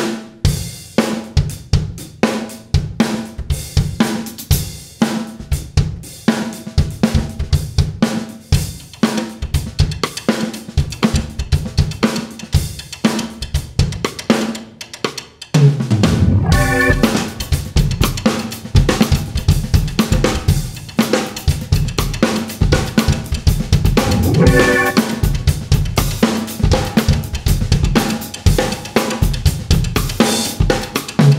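A drum kit playing a funk groove alone: kick, snare, hi-hat and cymbals in a tight repeating pattern. About halfway through, a keyboard joins with low bass notes and chords over the drums.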